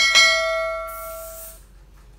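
Subscribe-animation sound effect: a mouse click followed by a notification bell ding that rings and fades away over about a second and a half, with a brief high shimmer partway through.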